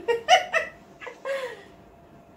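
A woman laughing in high-pitched bursts, a quick run of them at the start and another about a second in.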